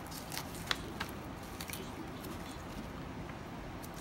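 Jackfruit pods and stringy fibres being pulled apart by hand, giving a few faint crackles and small snaps in the first half, then quieter handling over steady room noise.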